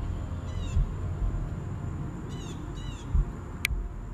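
Three short, high animal calls, each bending down in pitch, over a low rumble of wind on the microphone, with a sharp click about three and a half seconds in.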